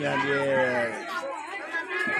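Speech only: a man talking slowly, drawing out his words for about a second, with people chattering around him.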